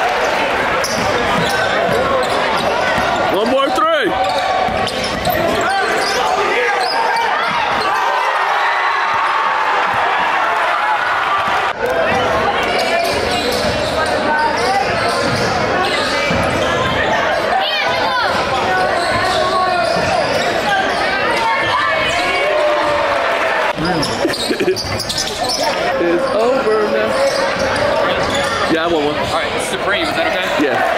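Basketball game sound in a gym: the ball bouncing on the court and voices of players and spectators echoing in the hall. There are two abrupt breaks in the sound, about 12 and 24 seconds in.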